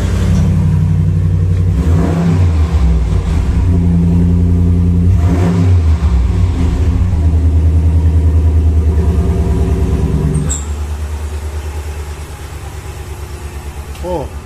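Ram 1500 Rebel's 5.7-litre V8 running through its stock exhaust, revved a few times, then dropping back to a quieter idle about ten seconds in.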